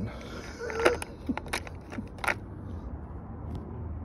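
Chrome sockets clinking against each other and the plastic case as a hand picks through a socket set: a few sharp clicks, the loudest about a second in, over a low steady hum.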